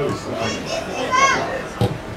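Voices calling and shouting around a football pitch, with one high, raised shout about a second in and a short thud near the end.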